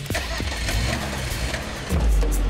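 Car engine starting up and running with a low rumble, mixed under background music.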